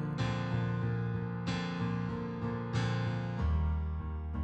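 Digital stage piano playing a piano sound: a driving pattern of sustained chords struck about once a second, with the bass moving lower about three and a half seconds in.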